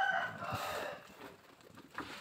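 A rooster crowing in the background, its call trailing off in about the first second, followed by a quieter stretch.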